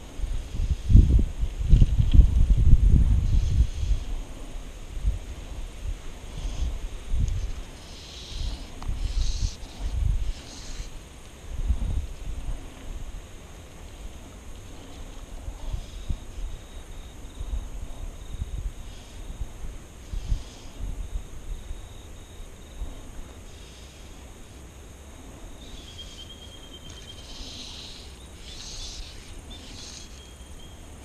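Wind gusting on the microphone in uneven low rumbles, heaviest in the first few seconds, over a faint steady high hiss.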